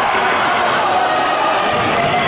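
Futsal ball being kicked and bouncing on a wooden sports-hall court during play, with voices from players and spectators echoing in the hall.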